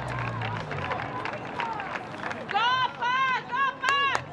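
Excited voices shouting and cheering at a soccer goal celebration. Mixed chatter gives way, about two and a half seconds in, to several loud, high-pitched yells in quick succession.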